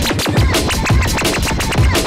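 Jungle / drum and bass playing from a DJ's turntable mix: a fast chopped breakbeat over deep bass hits, with vinyl scratching cut in over it.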